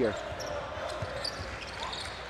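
Basketball dribbled on a hardwood court, a few faint bounces over steady arena crowd noise.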